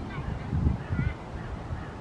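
Geese honking: a few short calls, the clearest about a second in, over a low rumble.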